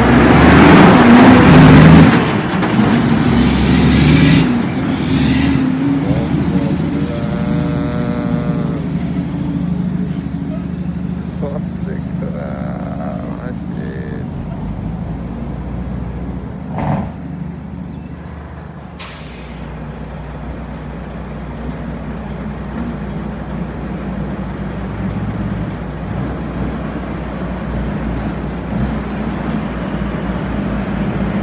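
Heavy diesel dump truck passing close, loudest in the first two seconds, then pulling away up the street with a steady engine rumble that carries on throughout. A brief air-brake hiss comes about two-thirds of the way through.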